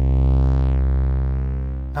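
Sustained low synthesizer drone from two slightly detuned oscillators run through a Trogotronic m/277 tube VCA: a steady, rich stack of harmonics whose brightness and level swell and ease with the slow beating between the oscillators. The changing input level makes the tube stage treat the sound differently, so it seems to drift in stereo.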